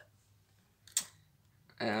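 A single sharp click about halfway through a pause in speech, followed near the end by a short spoken 'uh'.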